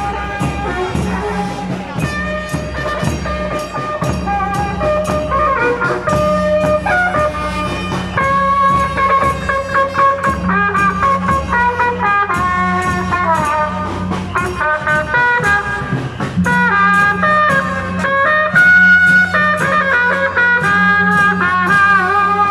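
A Taiwanese procession brass band playing a tune, with trumpets carrying the melody over a steady drum beat.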